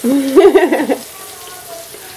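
Syrniki (cottage-cheese pancakes) sizzling in oil in a frying pan, a steady sizzle. A person's voice is heard briefly over the first second and is louder than the sizzle.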